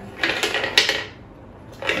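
A coin dropping into a wooden toy piggy bank and clattering down its wooden slide ramps: a quick run of clicks and knocks over about the first second, then stopping.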